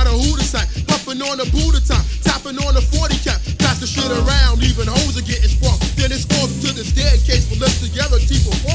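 Hip hop track: a rapping voice over a beat with booming bass and drums.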